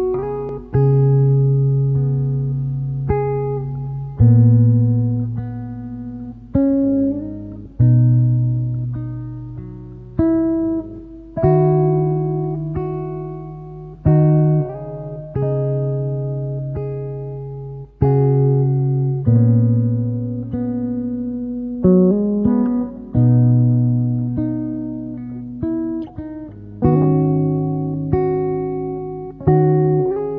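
Solo acoustic guitar playing a slow lullaby: plucked notes ringing and dying away over held bass notes, a new note or chord every second or two.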